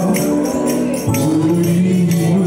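Live gospel worship singing: a lead singer and a group of backing singers on microphones hold notes together over accompaniment, with a quick, steady percussion beat. The low accompaniment shifts to a new chord about a second in.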